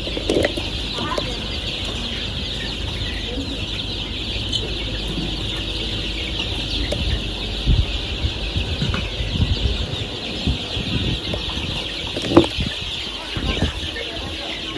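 A large flock of young white layer chickens: dense, steady chirping and clucking. Scattered low thumps of movement come through the middle, with one sharper knock near the end.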